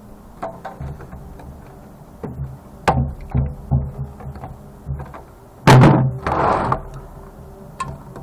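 Pliers snipping wires on the back of a CRT monitor and handling the chassis: scattered short clicks and knocks, with one louder knock and a scrape about six seconds in.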